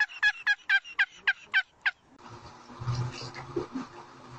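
Wild turkey gobbling: a rapid run of about eight loud calls, each dropping in pitch, roughly four a second, that stops about two seconds in.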